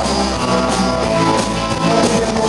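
Rock and roll band playing live, with electric guitars and drums.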